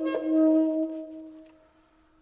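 Saxophone ending a fast repeated-note run on one long held note that fades away about a second and a half in.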